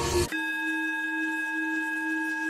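A singing bowl ringing one steady, unchanging tone with clear high overtones. A moment before it, backing music cuts off abruptly.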